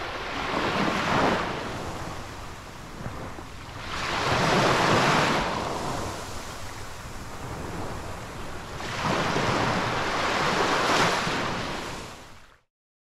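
Small surf breaking and washing up a sandy beach, the wash swelling and ebbing in three surges a few seconds apart.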